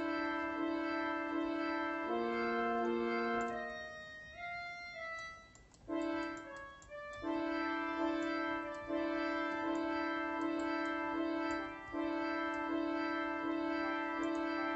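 Synthesized keyboard melody loop playing back from an FL Studio piano roll, long held chord notes repeating. About two seconds in the pattern changes, then thins and nearly drops out around five and a half seconds before the loop picks up again.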